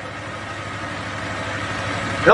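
Steady background hum and hiss with no speech, a low hum under an even noise that grows slightly louder across the pause.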